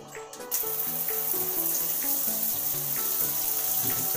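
Hotel shower spraying water, switched on about half a second in and then running steadily with a hiss.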